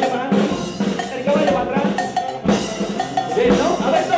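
A charanga band of brass, saxophone and drums playing a rhythmic tune, with drum beats repeating steadily under the horns.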